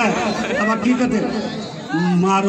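A man talking through a microphone and loudspeaker system.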